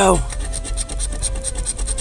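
A coin scraping the coating off a scratch-off lottery ticket in quick, repeated strokes.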